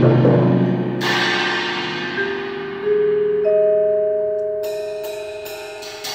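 Percussion ensemble of marimbas, vibraphones and timpani playing a sparse passage. Low notes ring out and fade, a stroke about a second in rings on and slowly dies away, then a few long ringing mallet notes sound, with light high strikes near the end.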